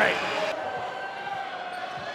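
Basketball arena crowd noise: a steady, even din from the spectators in a large hall.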